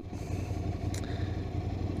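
Ducati Scrambler's air-cooled 803 cc L-twin running steadily at low revs, a low hum, with a faint tick about halfway through.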